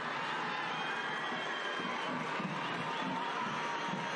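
Stadium crowd reacting to a goal just scored: a steady, moderate wash of voices and cheering.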